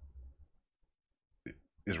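A short pause in a man's talk. A low, throaty sound trails off his last word at the start, then it is nearly quiet except for one short click about one and a half seconds in, just before he speaks again.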